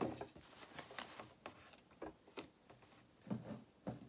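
Quiet handling of cotton fabric at a stopped sewing machine: light rustling and a few small, scattered clicks.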